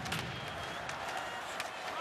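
Ice hockey arena sound: steady crowd noise with a few sharp clicks of sticks and puck during a scramble in front of the net.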